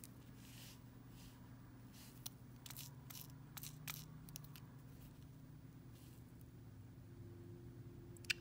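Faint, scattered light clicks of fine metal tweezers picking small rhinestones from a plastic tray, clustered around the middle, over a faint steady hum.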